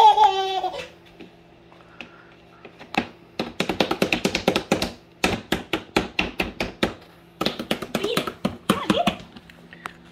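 A baby cries briefly at the start. After a short lull comes a long run of quick sharp taps and pats, several a second, from hands on an upturned plastic bowl of jello on a plastic high-chair tray.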